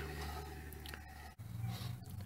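Faint low growl from a spinning trailer wheel's electric drum brakes, the shoes and magnets rubbing the drum, which is normal when the brakes are adjusted correctly. It cuts off abruptly about one and a half seconds in.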